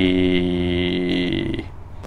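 A man's drawn-out hesitation sound, a steady 'eeh' held at one pitch for about a second and a half and then trailing off: a filled pause while he searches for a word.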